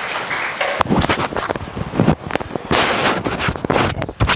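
Handling noise from a podium microphone: a run of irregular knocks and rubbing rushes as it is touched and moved. Before that, a haze of applause dies away in the first second.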